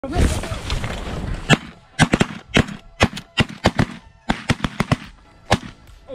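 Rapid volley of shotgun blasts, about fifteen sharp cracks over four seconds, some in quick pairs, from several guns firing at snow geese. A man's shout comes first.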